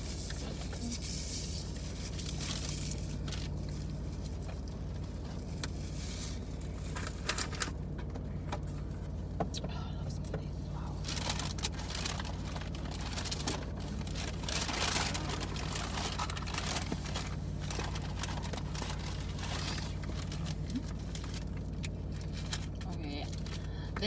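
Takeout food packaging rustling and crinkling with scattered clicks and scrapes as it is opened and handled, over a steady low hum inside a parked car.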